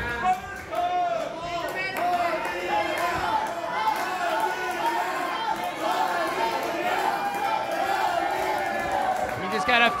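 A crowd's many overlapping voices, talking and calling out at once, with a louder burst near the end.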